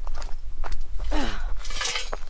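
Footsteps crunching through dry grass and gravel, with low wind rumble on the microphone and a brief voice about a second in.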